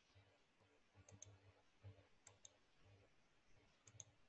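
Near silence broken by faint clicks of a computer mouse: a quick pair about a second in, another pair a little after two seconds, and a single click near the end.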